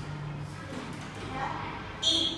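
Quiet room tone with a low steady hum, and a faint, brief murmur of a voice about a second and a half in.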